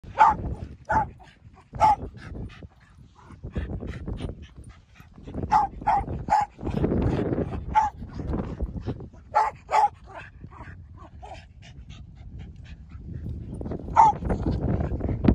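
A dog barking in short, sharp single barks, bunched in twos and threes with pauses between, about ten in all. A stretch of rustling noise comes about seven seconds in.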